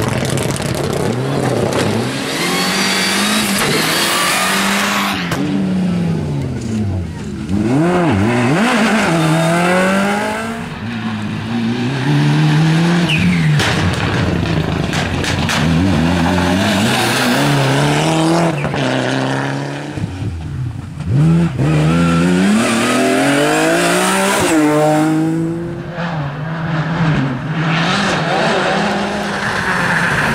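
Rally cars, Mitsubishi Lancer Evolutions among them, driven hard along a stage one after another. Their turbocharged four-cylinder engines rev up and drop back repeatedly through gear changes, the pitch climbing and falling many times.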